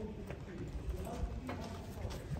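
Scattered footsteps clicking on stone paving as a group walks, over a low steady rumble, with faint voices in the background.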